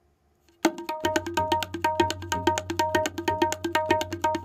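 Tabla pair played fast: a rapid, even run of strokes on the dayan ringing at a steady pitch, with the bayan's low resonance held underneath from about a second in. It is a fast uthaan (pickup) phrase, and it starts after about half a second of silence.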